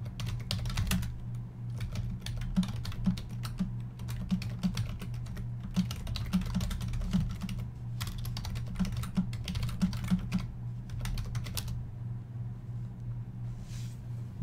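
Typing on a computer keyboard: bursts of quick key clicks broken by short pauses, over a steady low hum.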